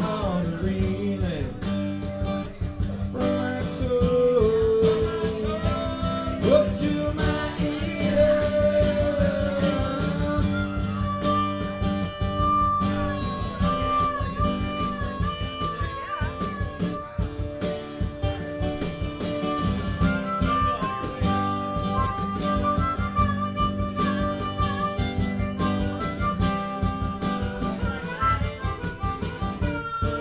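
Instrumental break in a blues-tinged band song: a harmonica solo holds and bends notes over guitar and a steady beat, with no singing.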